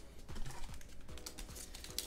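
Trading cards and a foil booster pack being handled on a table: a run of light, irregular clicks and taps, with a sharper crinkle at the end as the pack is picked up.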